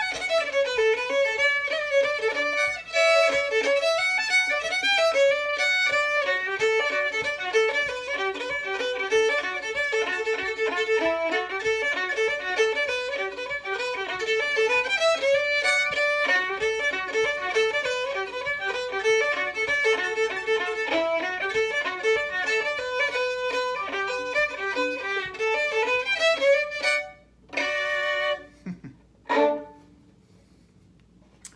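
Solo fiddle played in Irish style: a brisk dance tune of quick running bowed notes, finishing with two separate long held notes shortly before the end.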